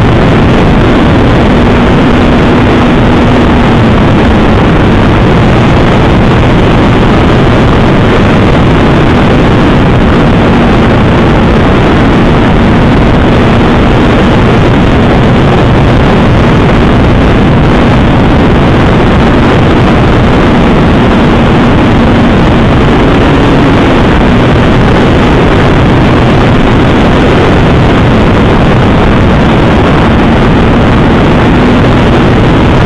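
An RC model plane's motor and propeller heard through its onboard camera's microphone in flight: a loud, clipped, steady rush of propeller and wind noise with a faint hum that wavers in pitch as the throttle changes.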